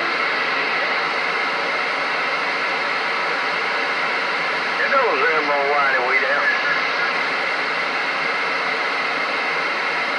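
Galaxy CB radio receiver putting out steady static hiss on an open channel, with a short stretch of warbling, garbled voice breaking through about five seconds in.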